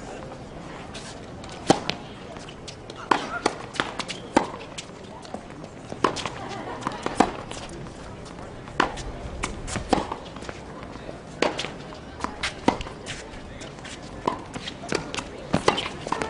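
Tennis balls being struck by rackets and bouncing on a hard court during play, a run of sharp, irregularly spaced pops.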